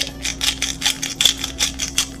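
Salt being shaken over a stainless steel mixing bowl: a rapid run of small, crisp clicks, about eight to ten a second, over a faint steady hum.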